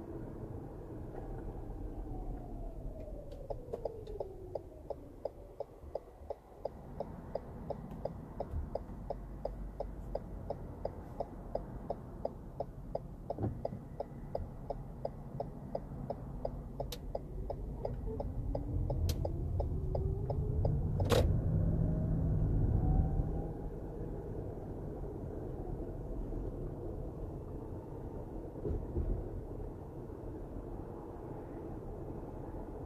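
Car turn-signal indicator ticking steadily, about three ticks a second, over the car's engine and road noise. The engine drops in pitch as the car slows to a stop, then rises and grows louder as it pulls away, with a sharp click during the pull-away.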